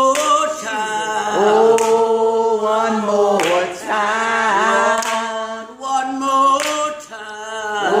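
Elderly woman singing a gospel song unaccompanied, drawing out long held notes that bend and slide between pitches. A few hand claps from a second woman clapping along.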